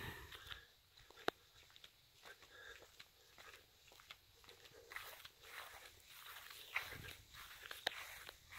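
Near silence with faint scattered ticks and rustles, and one sharper click just over a second in.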